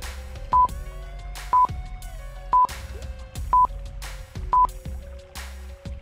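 Countdown timer sound effect, five short high beeps about a second apart, over soft background music with held tones.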